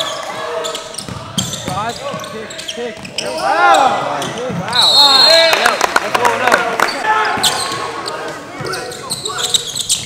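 Basketball game sounds in a gym: a ball dribbling on the hardwood and sneakers on the floor, with players and spectators shouting, loudest in the middle as a shot goes up. A brief high tone sounds about five seconds in.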